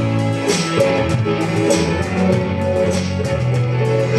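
Live band playing a song's instrumental intro: electric guitar strumming over drums keeping a steady beat.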